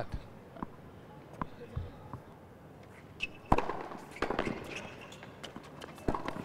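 Tennis balls struck by rackets during a point, several sharp pops, the loudest about three and a half seconds in. Scattered crowd clapping follows it.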